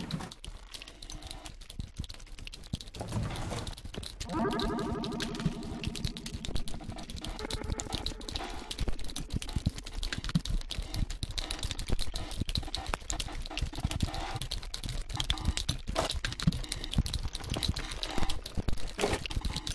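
Sample-based experimental electronic track: a dense layer of rapid, irregular clicks like typing runs throughout, and a pitched, voice-like tone comes in about four seconds in for a couple of seconds.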